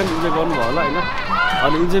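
Voices talking over the general noise of a busy street.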